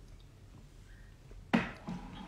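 A drinking glass set down with a sharp knock on a hard surface about one and a half seconds in, followed by a smaller knock just before the end; otherwise quiet room tone.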